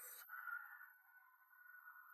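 Near silence, with only a faint sustained tone underneath.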